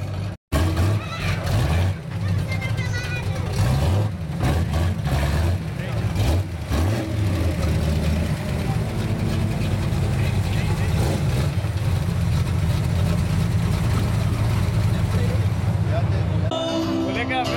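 Hot rod's Mopar small-block V8 engine, revved in several swells over the first seven seconds or so, then idling steadily.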